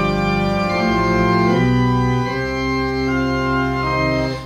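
Organ playing the introduction to a hymn, sustained chords that move to a new chord about every second, leading into the first sung verse.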